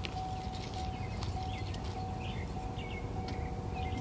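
Footsteps on asphalt as a person walks, over a steady low rumble and a faint, thin steady tone.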